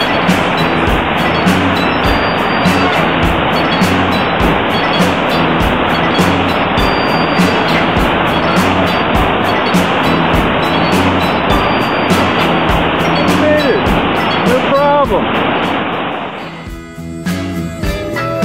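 Rushing whitewater of a river rapid as a raft runs through it, with a music track with a steady beat playing over it. A voice calls out briefly about fourteen seconds in, and near the end the sound of the rapid cuts away, leaving only the music.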